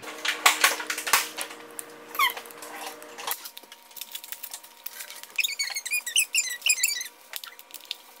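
Paper wrapping of a blind-bag toy capsule being torn and crinkled by hand, in many quick crackles, with bursts of high squeaks in the second half.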